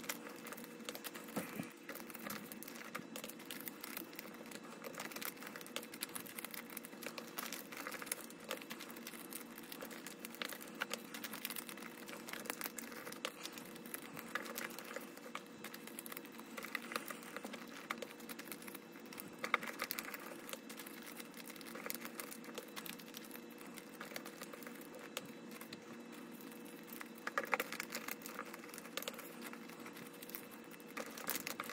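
Paper banknotes rustling and crinkling as they are handled and slid into clear plastic binder pockets, with many small quick clicks and crinkles throughout. A faint steady hum runs underneath.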